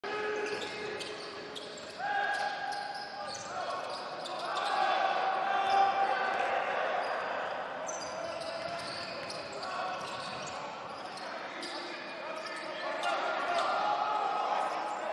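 Live basketball play in a near-empty arena: a basketball bouncing on the hardwood court again and again as it is dribbled, with players' and coaches' voices calling out and echoing around the hall.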